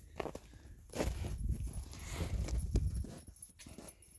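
Footsteps on an icy, snow-packed trail: a series of irregularly spaced steps, with a low rumble between about one and three seconds in.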